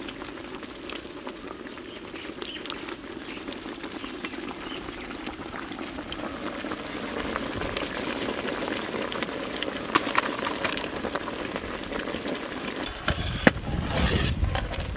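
A large pot of Maggi noodles boiling steadily with a dense bubbling, growing a little louder after the middle, with a few sharp clicks or knocks near the end.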